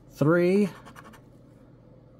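A metal scratcher coin scraping the coating off a scratch-off lottery ticket, faint after a man's voice calls out a single number near the start.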